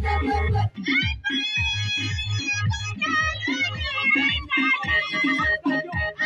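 A large women's choir singing in chorus, with a lead voice through a microphone and loudspeaker, over a steady low beat of about three pulses a second.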